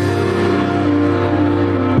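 Recorded backing music over the PA speakers, holding one steady sustained chord.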